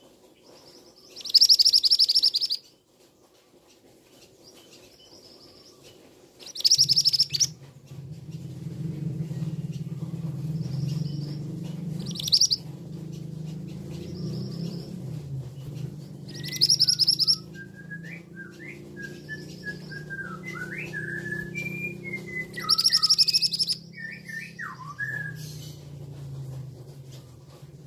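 Male scarlet minivet giving loud, high, harsh calls, five in all, about five seconds apart, with fainter calls between them. Softer, lower chirps run through the second half, over a steady low hum that starts about a quarter of the way in.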